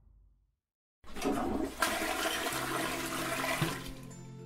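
A toilet flushing: a rush of water starts suddenly about a second in, surges louder shortly after, and dies away near the end.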